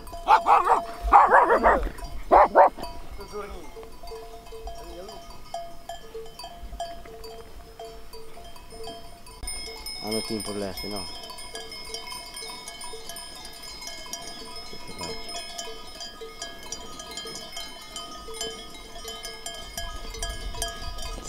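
Bells on a grazing flock of sheep ringing irregularly throughout. A few loud calls in the first three seconds and one more about halfway through.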